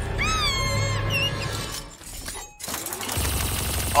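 An animated rat's high squealing scream, one long call that rises and then falls, followed by a short chirp. A low steady drone of the score comes in near the end.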